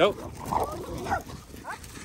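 A dog making a few short vocal sounds, with a brief rising sound near the end.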